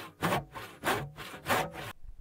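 Saw cutting through wood in repeated rasping strokes, about one every 0.6 seconds.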